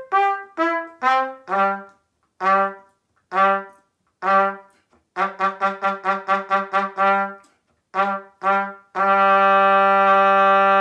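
Solo trumpet playing an orchestral trumpet part: separate, detached notes with short gaps between them, then a quick run of short repeated notes, about five a second. Near the end it settles on one long held low note.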